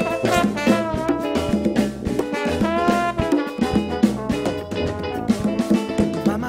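Instrumental band music with a trombone playing over guitar, sousaphone, percussion and drum kit, to a steady drum beat.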